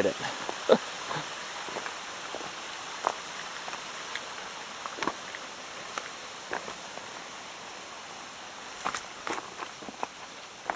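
Hiking footsteps crunching on a loose rocky, gravelly trail, irregular and about a second apart, with a few close together near the end, over a steady background hiss.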